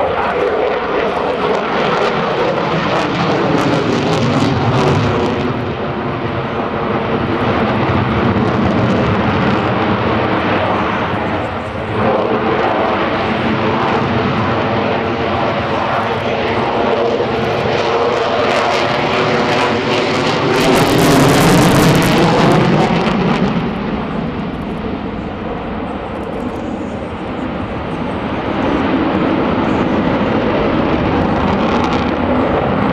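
Jet noise from an F-22 Raptor's twin Pratt & Whitney F119 turbofan engines as the fighter manoeuvres in a flying display. A continuous, loud rushing sound whose pitch sweeps down and then back up, growing loudest and harshest about two-thirds of the way in before easing off.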